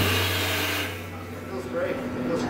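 Live jazz drum kit and cymbals ringing out after a hit, with a low held note, fading over the first second. Then a quieter stretch of soft, scattered sounds.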